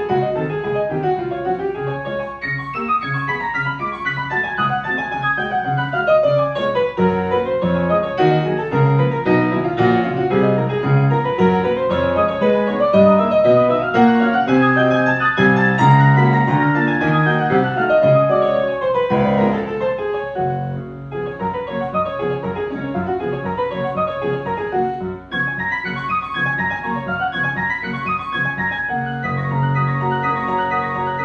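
Viscount Concerto 5000 digital grand piano playing a classical-style piano piece: flowing arpeggios that rise and fall over held bass notes, with a brief lull about twenty seconds in.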